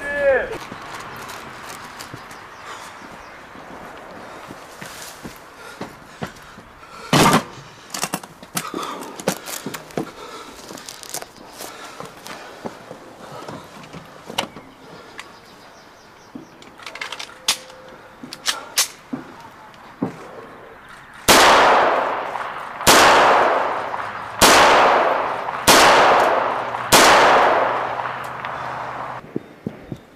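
Pistol shots on an outdoor range: five loud reports about a second and a half apart, each dying away in a long echo, near the end, after an earlier single sharp crack about seven seconds in.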